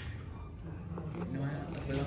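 Quiet room with faint voices talking in the background, growing slightly louder in the second half, and one small click about a second in.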